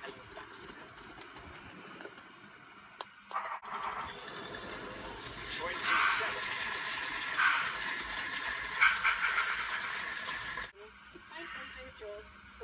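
OO gauge model diesel locomotive running through a scissors crossover, its electric motor whirring, louder from about three and a half seconds in and dropping away near the end. Television voices are heard behind it.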